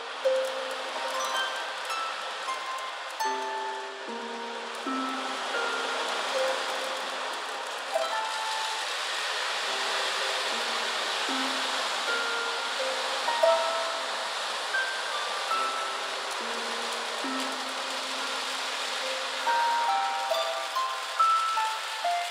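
Harp played slowly, single plucked notes ringing over held low notes, over a soft hiss of steel beads rolling across a drum head that swells in the middle and fades again.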